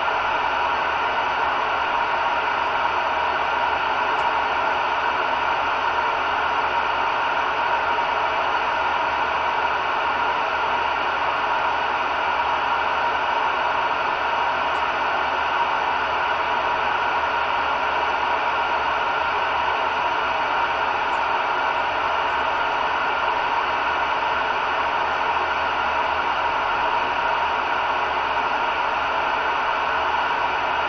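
CB radio receiver tuned to the 27.18 MHz band, giving out a steady, unbroken hiss of static through its speaker with no signal coming in.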